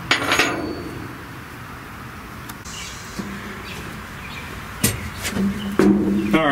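Steel parts of a Bucyrus-Erie 15B shovel's clutch clinking and knocking as a clutch band is worked back into place, with a louder clank right at the start and a few sharp clicks later on.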